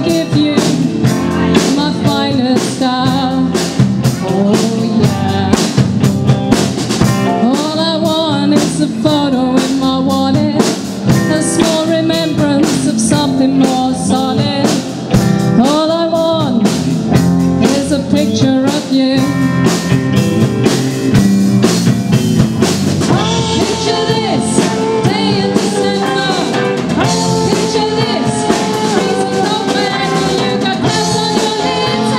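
Live rock band: a woman singing lead into a microphone, with a second female voice, over electric guitar and a drum kit keeping a steady beat.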